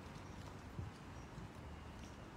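Quiet pause filled with a faint, uneven low rumble of wind on a phone microphone outdoors, with one soft low thump just under a second in.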